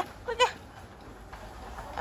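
A young child's short, wavering vocal sounds, one right at the start and another about half a second in, then only quiet background.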